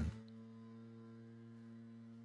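A leaf blower running at a distance, heard as a faint, steady drone.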